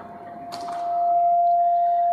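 Public-address feedback from a handheld microphone: a single steady high ringing tone that swells loud about half a second in and then holds steady, with a short click as it begins.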